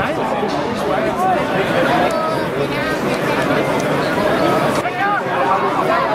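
Several voices overlapping with no clear words: players calling out and onlookers chatting during play on a football pitch.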